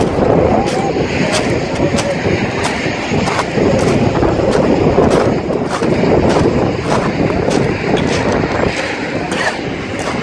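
Wind buffeting the microphone of a handheld camera, with walking footsteps on a gravelly dirt path ticking about twice a second.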